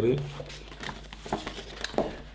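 Paper rustling and light clicks as the pages of a printed catalogue are handled and turned, with a sharper tap near the end.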